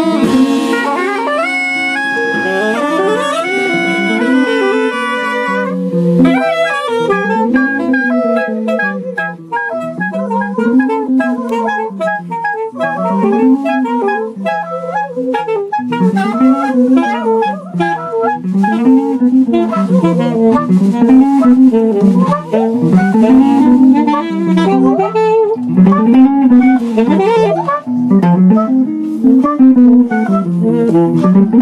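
Live free-jazz improvisation: saxophones and clarinet hold and slide long tones for the first few seconds, then a low rising-and-falling figure repeats about every two seconds, with archtop electric guitar and drums.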